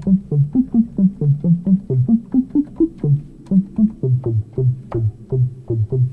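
Modular synthesizer voice played from a keyboard through a filter: a fast run of short, quickly decaying low notes, about four a second, wandering up and down in pitch. It is a sequence being played in while the sequencer records it, heard through its monitoring.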